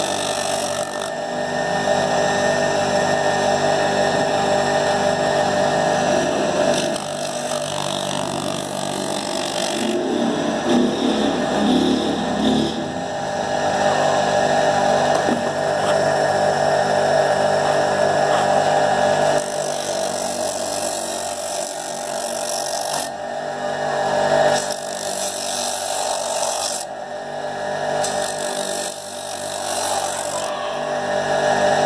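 Electric motor running a white grinding wheel, with a rubber flip-flop sole held against it to finish its edge. The grinding noise comes and goes in stretches of a few seconds as the sole is pressed on and eased off, over a steady motor hum.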